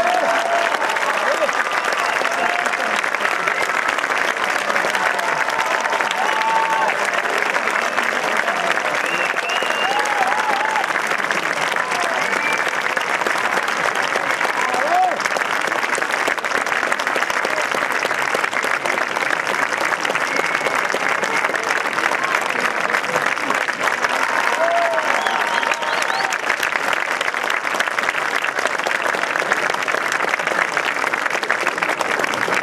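Audience applause, steady and sustained, with voices calling out here and there through the clapping.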